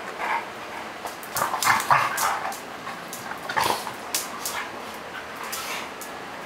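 Two dogs, a Labrador retriever and a smaller dog, play-fighting and giving short growls, yips and barks in scattered bursts.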